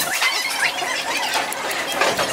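A dense chorus of many short, high chirps and squeaks overlapping continuously, like a large flock of birds calling together in the trees.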